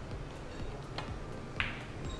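A pool cue tip clicks against the cue ball about halfway through. About half a second later the cue ball cracks into an object ball, the loudest sound, with a short ringing clack.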